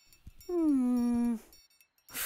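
A cartoon character's wordless thinking hum, a single "hmm" about a second long that falls in pitch and then holds steady. Faint tinkly background music runs under it.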